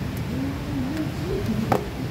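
A brief low wordless vocal sound that slowly rises and falls, then a single sharp click near the end, over steady background noise.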